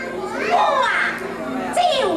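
Teochew opera performer's stylised stage speech: a high-pitched voice with sliding, rising and falling inflections, without instrumental accompaniment.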